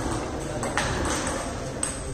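Table tennis ball strikes: two sharp clicks about a second apart from the ball hitting bat and table as a rally ends.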